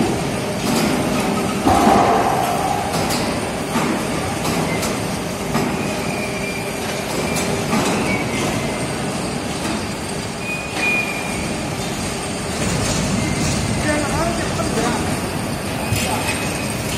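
Steady, loud rumbling and rattling of heavy machinery in a concrete pole plant, with scattered metallic clanks throughout.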